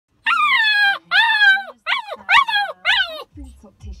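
An eight-week-old husky-malamute puppy howling for the first time in high, falling cries: two longer howls, then three shorter, quicker ones.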